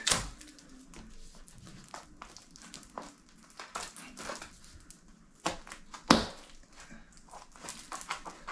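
Small scissors snipping and picking at silver tape wrapped round the capped end of a PVC pipe, with the tape crinkling and tearing in irregular bursts. Sharp clicks stand out at the very start and about six seconds in.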